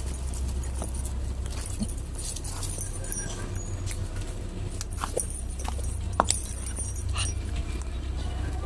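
Steady low rumble of wind and handling on the microphone, with a few scattered clicks and light rustles of footsteps in flip-flops on leaf-strewn concrete, the sharpest clicks about five and six seconds in.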